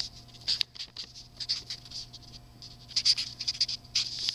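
Pen scratching on a spiral notebook page close to the microphone, in quick irregular strokes, with a dense run of strokes near the end.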